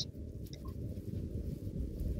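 Faint, muffled sound of sticky, butter-rich bread dough being kneaded by hand on a stainless steel worktop.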